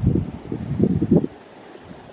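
Wind buffeting the microphone, a gusty rumble for about the first second that drops to a faint hiss.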